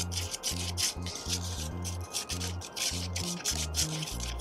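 A spoon stirring and scraping wet dental stone plaster in a plastic cup, with quick, repeated strokes. Background music with a steady bass line plays underneath.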